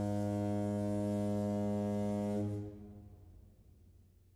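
A ship's horn sounds one long, low-pitched blast. It stops about two and a half seconds in, and its echo fades away.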